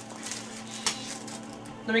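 Gift wrapping paper rustling and crinkling in hands, with one sharp crackle a little under a second in.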